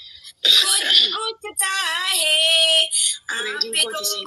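A woman's voice making wordless sounds: a rough, cough-like burst about half a second in, then a long drawn-out note that wavers in pitch, then more short vocal sounds near the end.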